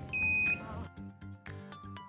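A single high electronic beep, about half a second long, from a wall-mounted infrared forehead thermometer, signalling that a temperature reading has been taken; background music with a steady beat plays under it.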